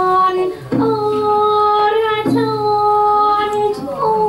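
Thai song: a woman's voice sings long held notes with pitch slides between them, played as music for the dance.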